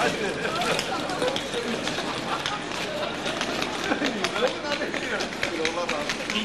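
A group of people talking over one another at close range, several voices at once, with scattered sharp clicks and knocks among them.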